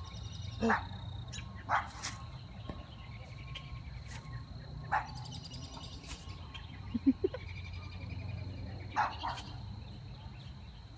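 Outdoor evening ambience: a steady high insect-like trill with faint chirping, broken by a handful of short, sharp sounds a second or more apart. The loudest is a brief pair about seven seconds in.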